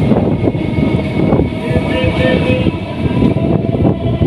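Electric multiple-unit local train running, heard from an open door: a continuous rumble of wheels on the rails with a steady whine over it.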